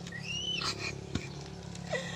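A faint animal call: a thin, high cry that rises and then falls over about half a second, followed a little later by a single light knock.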